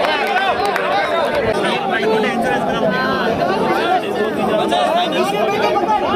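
Crowd of spectators shouting and chattering, many voices overlapping at once.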